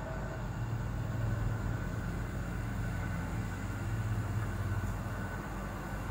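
Steady low hum with a faint even background noise, a pause in the talk of a home recording setup. No single event stands out.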